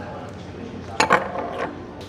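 Tableware clinking: two sharp strikes about a second in, like chopsticks or a spoon knocking a dish. Faint voices are heard behind.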